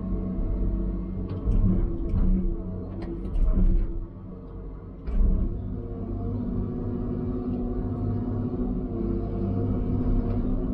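Diesel engine and hydraulics of a knuckleboom log loader running, heard from inside its cab. The load swells several times in the first half as the operator works the grapple controls, with a brief dip about four seconds in.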